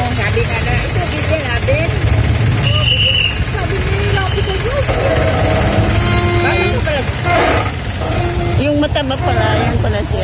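People talking, over the steady low rumble of an idling engine.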